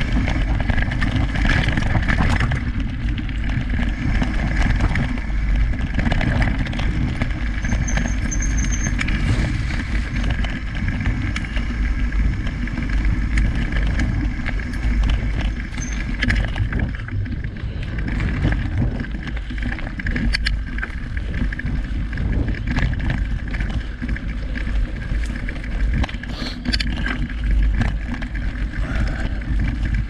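Mountain bike rolling along a dirt singletrack, recorded from a camera mounted on the bike: a steady low rumble of tyres and ride noise, with a few sharp clicks and rattles from the bike.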